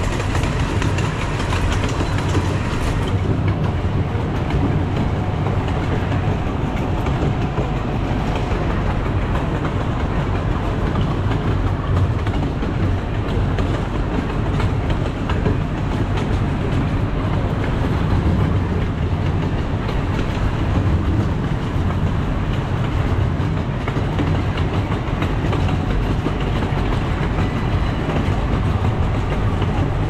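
Steady rumble and rail clatter of a miniature park train on its track, heard from on board the moving train.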